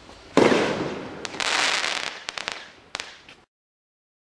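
Dynasty Goliath firework rocket bursting overhead: a sudden loud bang about a third of a second in, a second swell of noise about a second later, then a few sharp cracks. The sound cuts off suddenly near the end.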